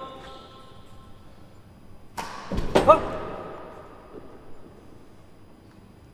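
Real tennis racket striking the ball with a sharp crack about two seconds in, followed by the ball thudding against the court, echoing in the enclosed court. Two lighter knocks follow a little later.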